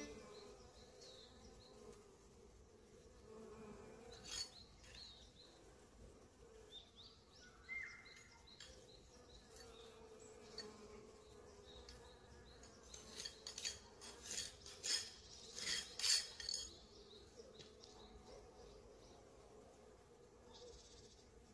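Honeybees' wings buzzing faintly, a low wavering hum. Sharp clicks and rustles break in a few times, clustered in the second half, and are the loudest sounds.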